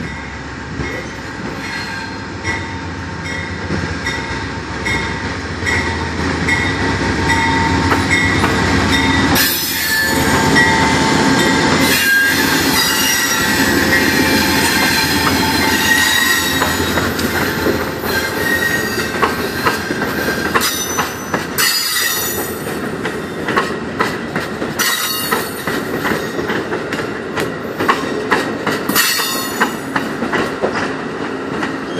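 A GE P42DC diesel locomotive approaching and rolling past, its engine rumble loudest partway through, while a grade-crossing bell dings about twice a second. The passenger cars then roll by with the wheels clacking over the rail joints and some high wheel squeal.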